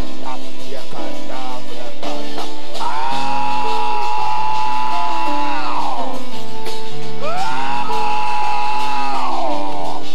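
Church worship music: sustained keyboard chords under a voice that holds two long notes, each sliding up into the note and falling away at its end.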